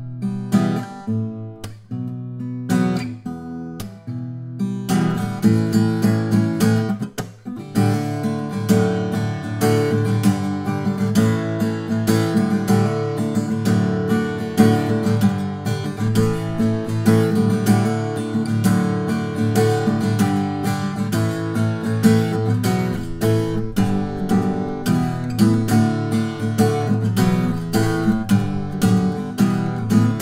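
Steel-string acoustic guitar being fingerpicked, a Lowden S35 12-fret with a cedar top and cocobolo back and sides. It opens with sparse single notes and pauses, then settles into a full, steady flow of picked notes from about five seconds in.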